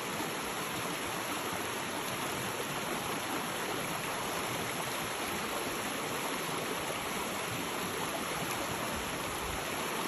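Steady rush of flowing water in a shallow, rocky creek, with the swish of legs wading through it.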